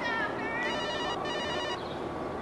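Mobile phone ringtone: two short trilling rings, each about half a second, starting about half a second in.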